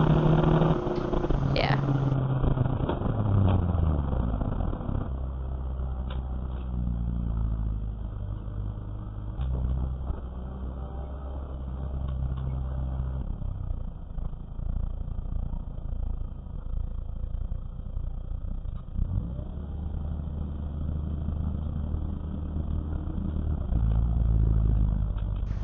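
Race car engine heard from inside the cabin, revs falling over the first few seconds as the car slows, then running at low revs with small rises and falls as it is driven slowly.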